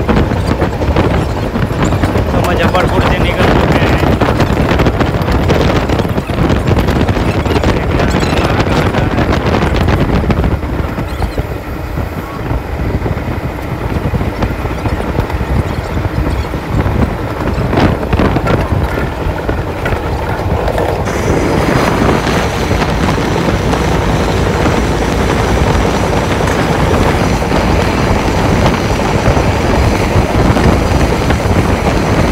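Indian Railways passenger train running along the track, heard at an open coach window: a steady rumble and rattle of wheels on the rails, with wind noise and knocks scattered through it. The noise grows brighter and a little louder about two-thirds of the way through.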